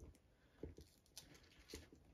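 Near silence with a few faint clicks and taps: a plastic LEGO brick being handled and pressed onto LEGO studs.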